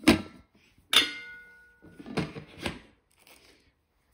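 Lightweight nonstick pots and lids being handled and knocked together: a click, then a sharp clink about a second in that rings briefly, then two duller knocks.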